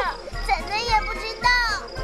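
A cartoon character's high-pitched voice speaking short exclaimed lines over background music.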